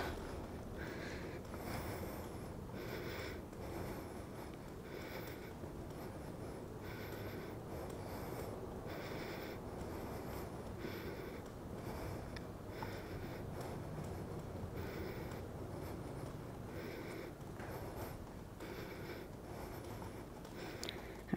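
A woman breathing hard in a steady rhythm, about one breath a second, from the effort of pedalling an exercise cycle at a vigorous pace against raised resistance.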